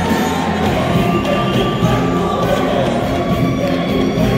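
Live Lebanese Arabic pop concert music played loud through the hall's sound system: a female singer with her band, with the crowd singing along and cheering.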